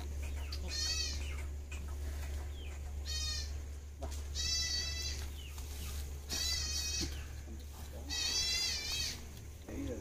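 A goat bleating repeatedly: five short, high, wavering calls about two seconds apart.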